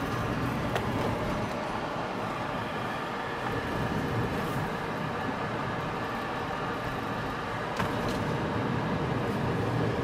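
Steady road and engine noise heard inside the cabin of a moving car, with a faint click about a second in and another near the end.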